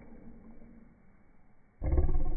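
A person's voice making a loud, low sound that starts suddenly near the end, after a quiet stretch.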